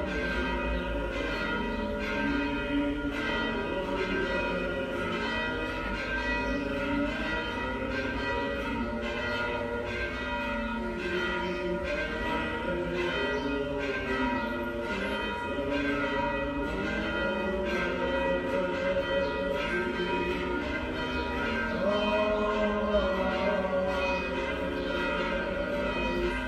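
Orthodox church bells pealing, struck over and over in quick succession, their tones ringing on and overlapping.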